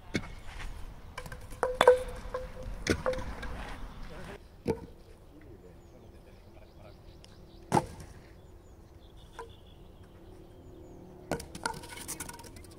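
Wooden kyykkä throwing bats striking the asphalt and knocking over wooden pins: a series of sharp wooden clacks and clatters, the loudest about two seconds in, with another cluster near the end as a bat lands close by.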